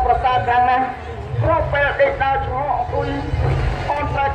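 A male lakhon basak actor's voice, amplified through a handheld microphone and stage loudspeakers, delivering his lines in Khmer with some held, sung-sounding notes. A steady low rumble runs underneath.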